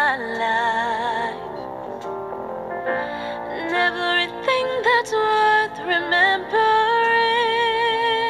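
A woman singing a ballad over musical accompaniment, holding several long notes with vibrato.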